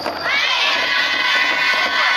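A group of young women shouting together in unison, starting about a third of a second in with voices that rise and then hold.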